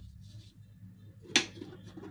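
A single sharp tap of drawing instruments on the drawing board, about a second and a half in, over a low steady hum.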